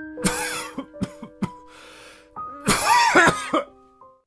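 A person coughing hard in two fits, a few short hacks and a breath drawn in between, over soft piano music; the second fit is the loudest.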